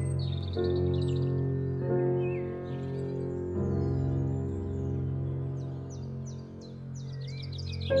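Calm background music of sustained chords that change about every three seconds, with short bird chirps over it.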